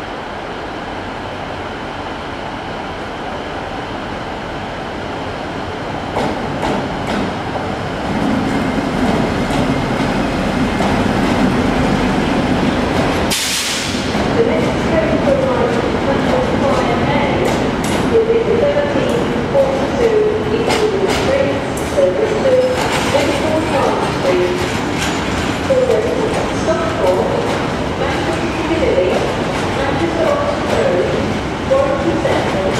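Diesel-hauled freight train of covered hopper wagons running through a station. The locomotive's engine grows louder over the first several seconds. Then the wagons roll past with wavering, intermittent metallic squeals from the wheels, after a brief loud burst of noise about halfway through.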